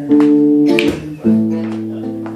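Acoustic guitar strummed in two chords, each struck once and left to ring, a little over a second apart.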